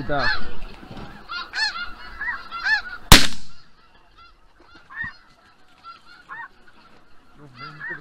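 Snow geese honking in a steady, overlapping chorus. A single shotgun shot cracks out about three seconds in and rings briefly, and the honking carries on more faintly after it.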